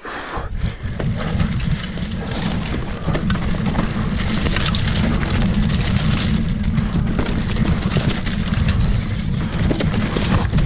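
Specialized Kenevo Expert e-mountain bike with a Fox 40 fork descending a rocky downhill trail: a constant rattle and clatter of tyres, fork and frame knocking over rocks, under a heavy wind rumble on the GoPro's microphone. It picks up just after the start and runs on at a steady loudness.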